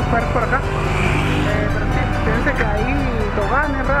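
Background music over a steady low wind rumble on a bicycle-mounted camera, with a man's voice talking indistinctly.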